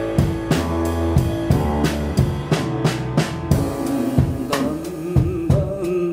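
Live band playing: a drum kit keeps a steady beat with snare and bass drum, under upright double bass and piano.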